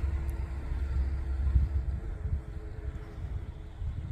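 Steady low outdoor rumble with a faint steady hum over it that fades out near the end.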